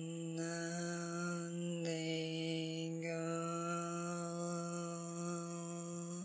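A woman's voice chanting one long, steady tone on a single low pitch, drawn from the diaphragm. The vowel colour shifts about half a second in, again near two seconds and near three seconds, while the pitch holds.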